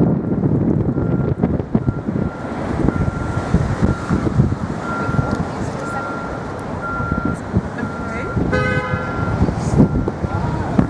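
Rumbling road and engine noise of a moving shuttle bus, with a thin, high beep repeating about once or twice a second. A short horn-like toot sounds near the end.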